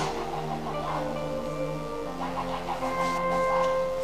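Soft background music of held keyboard chords, with the chord changing about two seconds in.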